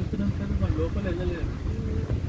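People talking over the steady low rumble of a moving vehicle, with wind noise on the microphone.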